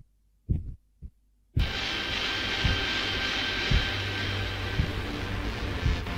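A heartbeat sound effect, low double thumps about once a second. About a second and a half in, a loud, steady, droning music bed with a few held tones comes in, and faint beats go on beneath it.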